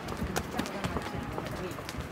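Footsteps of several walkers on a stone pavement, hard shoe heels clicking irregularly about four times a second.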